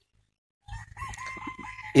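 A rooster crowing once: one long call, held at a steady pitch, starting a little under a second in.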